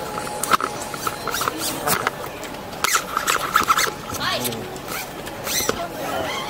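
Chatter of passengers' voices on an open-air deck, with scattered clicks and knocks.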